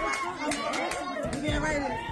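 Crowd chatter: several voices talking and calling out over one another, with a few sharp claps or taps among them.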